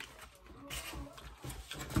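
Soft, irregular clicks and smacks of someone eating a taco, chewing and handling the food, several of them in the second half.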